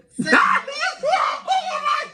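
A man laughing hard in loud, high-pitched shrieks, several bursts in a row.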